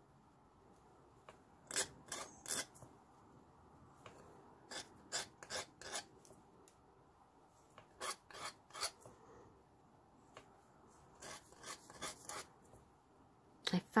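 Needle file rasping the hammered end of a copper wire pin, filing its rounded tip to an angled shape. The strokes come faintly in short runs of three to five, a few seconds apart.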